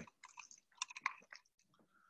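Faint, scattered small clicks and smacks, with a brief soft steady tone near the end.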